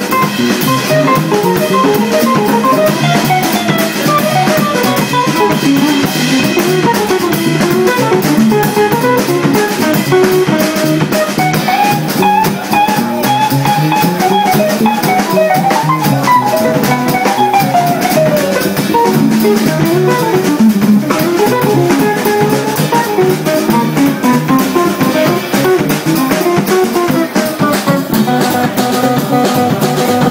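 Jazz trio playing live: electric guitar playing flowing melodic runs that climb and fall, over bass and drum kit.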